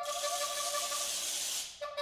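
A long hiss made as part of a contemporary piece for voice, harp and percussion, with a steady held note sounding under it. The hiss stops shortly before the end, and a pitched note comes back in.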